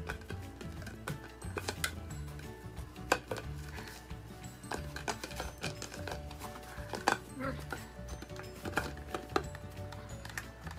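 Background music, with sharp crackles and knocks from a plastic drink bottle being bitten and pawed by dogs; the loudest knocks come about three seconds in and about seven seconds in.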